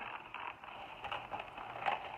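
Paper plates being handled and pried apart, an irregular papery rustle and scraping with a sharper click near the end.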